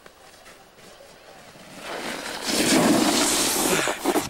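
Snowboard skidding across snow as the rider slides to a stop: a scraping hiss that starts about halfway through, swells quickly and stays loud to the end.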